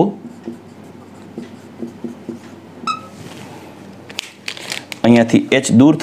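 Marker pen writing on a whiteboard: faint strokes with a short, high squeak about three seconds in. A man's voice resumes near the end.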